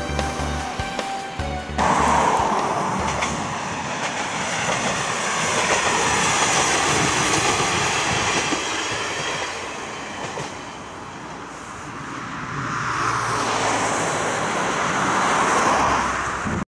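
Background music for about the first two seconds, then an abrupt cut to a single-car train running past on the rails. Its noise eases around the middle and swells again near the end.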